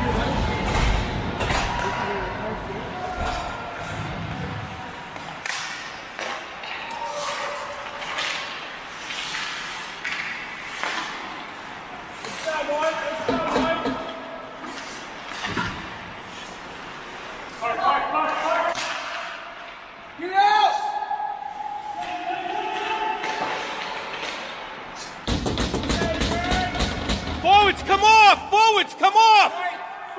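Ice hockey play in an echoing indoor rink: sticks and puck knocking and thudding against the ice and boards, with players' voices and shouts. A run of loud, repeated shouted calls comes near the end.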